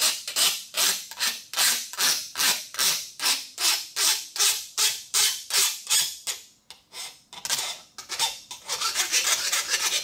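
Hand file rasping back and forth across the edge of a steel plate clamped in a vise, in even strokes about three a second, smoothing the rough grinder-cut edges. There is a short pause about two thirds of the way through, then quicker, shorter strokes.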